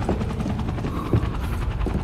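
A steady, loud, low mechanical rumble with a rapid, even beat running through it.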